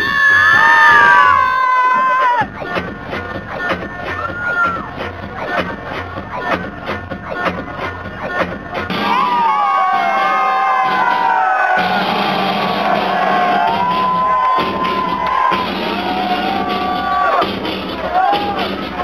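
Club dance music played loud from a DJ set, with the crowd cheering and shouting over it. The beat cuts out briefly about two seconds in, then returns steady. From about halfway through, high gliding shouts and whoops ride over the music.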